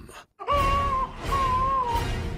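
A man screaming in a long, high-pitched held shriek over background music. The scream starts about half a second in after a brief silence, breaks off for a moment, and starts again.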